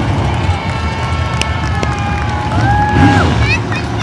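Race cars running laps on a short oval, heard as a steady low rumble, with spectators' voices close by.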